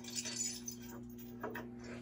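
Faint light clinking over a low steady hum.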